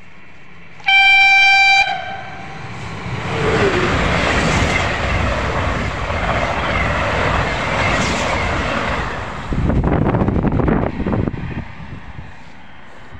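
Siemens Velaro RUS "Sapsan" high-speed electric train sounding one horn blast of about a second, then rushing past at speed with a loud roar of air and wheels that lasts several seconds. It ends in a rapid clatter of wheels on the rails as the last cars go by, then fades.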